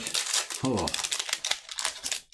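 Foil wrapper of a Magic: The Gathering collector booster pack crinkling and crackling as it is torn open and the cards are slid out, with a brief voice sound a little under a second in.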